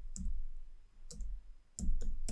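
Computer keyboard keystrokes: about three separate key clicks, each with a soft low thump, spaced half a second to a second apart, as a short version number is typed.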